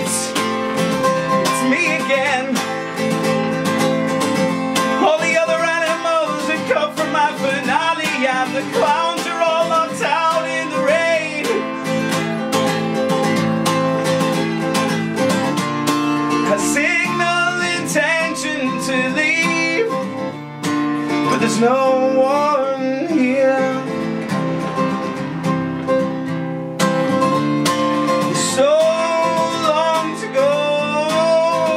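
Acoustic guitar strummed continuously, with a man singing over it in stretches.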